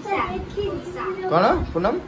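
Children talking, high-pitched voices.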